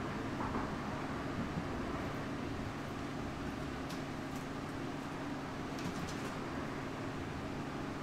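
A steady, even machine hum with a low drone, unchanged throughout, and a few faint ticks about four and six seconds in.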